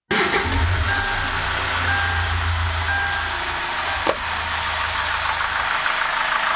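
Hyundai D4CB 2.5-litre four-cylinder turbodiesel idling smoothly and softly, a steady low hum that eases a little after about three and a half seconds. Short high beeps come about once a second during the first three seconds, and there is a single sharp click about four seconds in. The engine is running as it should after a new EGR valve and intake manifold gasket were fitted.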